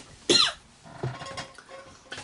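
A person coughing, one loud cough about a quarter second in followed by fainter sounds; the cougher puts it down to allergies.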